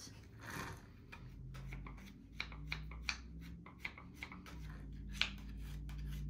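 A clay scraping tool rasping over the wet, coil-built wall of a clay cup in quick, repeated short strokes, with a sharper click about five seconds in.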